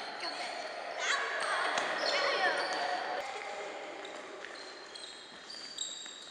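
Sneakers squeaking and stepping on a wooden sports-hall floor as children shuffle and side-step, with short high squeaks scattered through. Children's voices sound in the hall in the first half.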